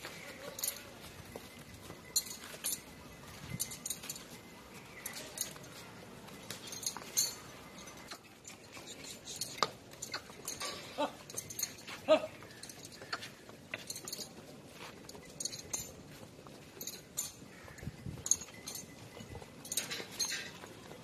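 A herd of Nili-Ravi water buffaloes moving about a dirt yard, with scattered light clinks and knocks at irregular intervals. The sharpest comes about twelve seconds in.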